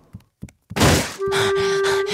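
A loud, sudden thunk about three quarters of a second in, preceded by two faint knocks. Just after a second in, a steady, high held tone begins and continues.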